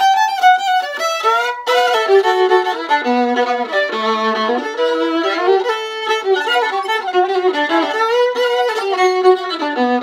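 Solo violin bowed through a melody, its notes dropping into the instrument's lower register from about two seconds in. The violin has just had its neck reset to the proper angle and is being played to test its tone.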